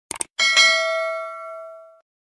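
A quick double click, then a single bell-like ding with several ringing tones that fade and cut off suddenly near the end.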